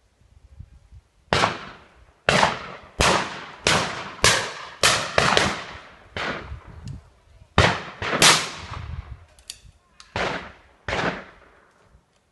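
A rapid, irregular volley of about a dozen shotgun shots, some close together, each ringing off in a rolling echo.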